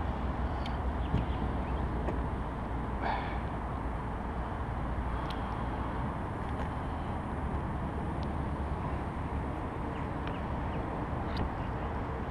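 Steady low outdoor noise, mainly wind on the kayak-mounted camera's microphone, with a few faint clicks and knocks from handling gear on the kayak and one brief rising squeak about three seconds in.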